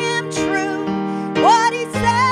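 A woman singing a worship song into a microphone, held notes with vibrato over sustained instrumental accompaniment.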